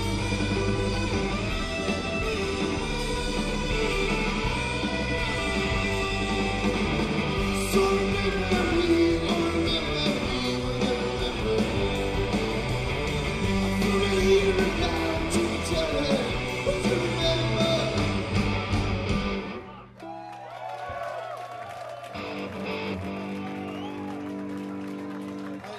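Live rock band playing loud with electric guitars, bass and drums. The song stops abruptly about twenty seconds in, and quieter sustained guitar and bass tones ring on after it.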